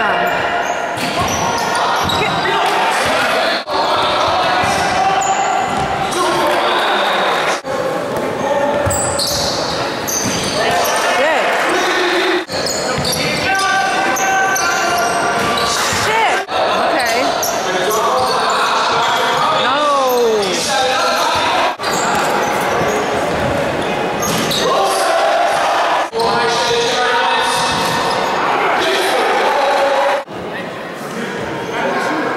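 Basketball game in a reverberant sports hall: a ball bouncing on the wooden court amid players' and spectators' voices calling out.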